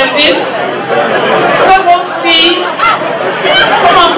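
A woman speaking through a handheld microphone and the hall's sound system, with chatter from the crowd behind her.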